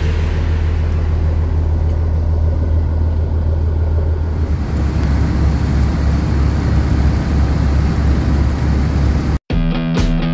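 Boat engine running with a steady low drone and the rush of water. About four and a half seconds in, the drone shifts lower and the water wash grows as the boat runs under way, leaving a churning wake. The sound cuts off sharply shortly before the end and music begins.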